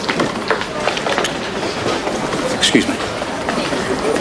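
Indistinct background chatter and general bustle of people moving about, a steady murmur of voices with no clear words.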